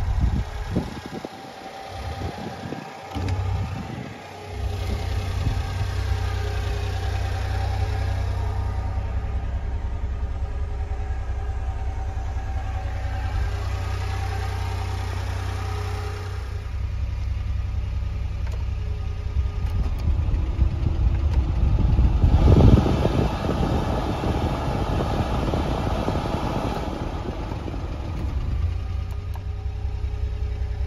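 A 1996 Honda Acty van's small three-cylinder engine idling with a steady low hum. Irregular thumps and handling bumps break it up over the first few seconds, and a louder rushing noise swells over it a little past the middle.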